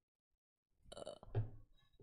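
A short, throaty sound from a woman's voice about a second in, peaking in one low burst.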